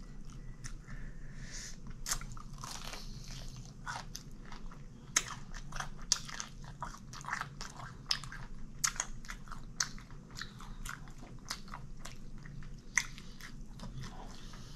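Close-miked biting and chewing of crispy fried chicken: irregular crunches and crackles, with a few sharper bites standing out about five seconds in and near the end.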